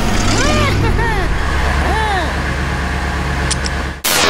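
Cartoon car engine sound effect: a steady low rumble that swells up about a second and a half in, with short rising-and-falling voice exclamations over it.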